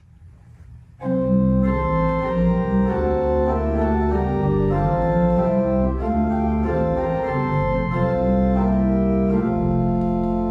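Organ playing the introduction to a hymn in held chords, starting about a second in and changing chord every second or so.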